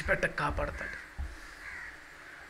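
A man preaching through a microphone: a short spoken word at the start that trails off, followed by a faint drawn-out sound near the end.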